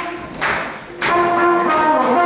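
Acoustic guitar strumming under a brass horn playing a melody. The horn rests for about a second, then comes back in with a long held note.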